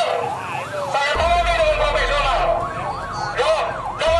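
Police car siren sounding in quick rising and falling sweeps, over the voices of a crowd.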